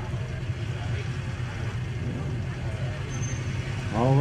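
A steady low engine drone, such as a vehicle running at idle, under a noisy outdoor background.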